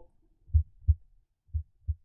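Simulated normal heart sounds: two lub-dub beats, about a second apart. The second beat is fainter, the sound dropping as the chest piece is moved off the point of maximum intensity.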